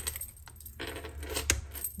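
A tarot card being drawn and laid on the table: a soft rustle of card stock, then a sharp tap as it lands about one and a half seconds in.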